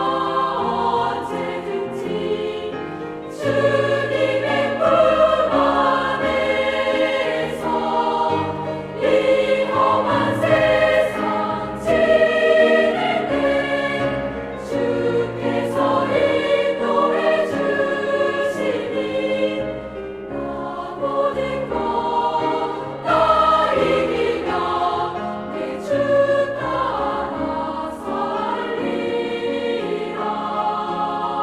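A large girls' choir singing a hymn anthem in Korean, in full harmony with piano accompaniment, phrase after phrase with short breaths between.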